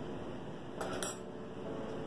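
A metal fork clinks twice against a tiled countertop, two light taps about a quarter second apart roughly a second in, as pie pastry tops are pricked and the fork is put down.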